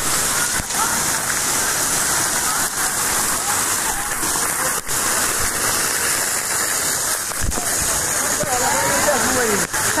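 Water from play jets spraying and raining down in a steady, loud hiss, with drops splashing close to the microphone. Voices come through faintly near the end.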